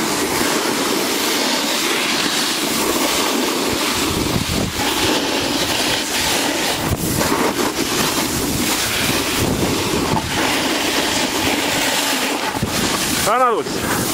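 Snowboard sliding and carving over packed snow: a steady scraping hiss, with wind on the microphone. A voice calls out briefly near the end.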